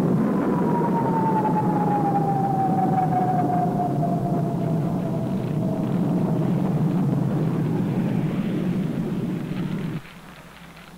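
Jet aircraft passing at low level: a steady low roar with a high whine that slides slowly downward in pitch over about six seconds. The sound cuts off abruptly at the end.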